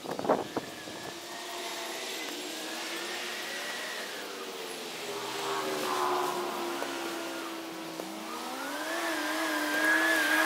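A motor vehicle engine running, its pitch sliding slowly down over several seconds and then rising again near the end, like a revving engine. A couple of sharp knocks right at the start.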